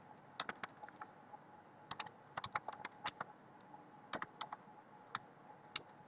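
Computer keyboard keystrokes: typing in short, irregular bursts of clicks with brief pauses between them.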